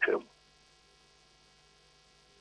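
A man's voice on a telephone line ends a word in the first quarter second, then a pause holding only a faint, steady electrical hum.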